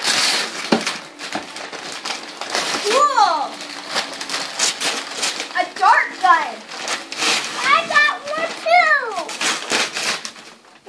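Christmas wrapping paper tearing and rustling for the first few seconds, then high children's voices calling out excitedly several times, pitch sweeping up and down.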